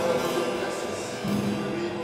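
Gospel-style worship music dying away, its sustained notes getting steadily quieter with light percussion.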